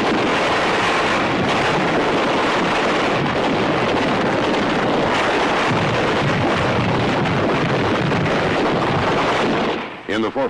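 Loud, steady roar of battle noise on an old film soundtrack, with no single shot standing out, cutting off suddenly near the end.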